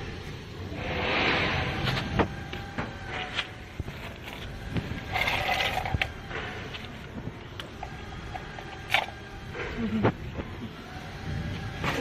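Handling noise: rustling and a few sharp clicks and knocks as a power cable and its plug are handled, with two longer rustling stretches about a second in and again about five seconds in.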